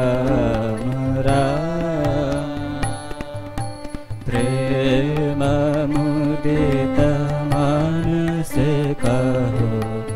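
Indian devotional song sung by men's voices to harmonium accompaniment, the melody sliding and ornamented over steadily held notes. The singing eases off briefly about three to four seconds in, then comes back in full.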